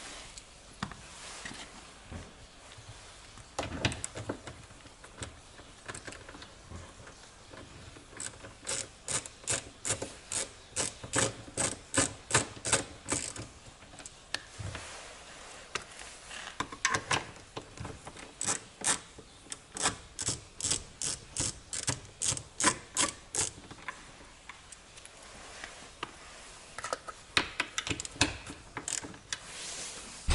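Ratchet wrench with a 10 mm socket clicking as the outside mirror's mounting bolts are unscrewed: two long runs of quick clicks, about three a second, and a few more near the end.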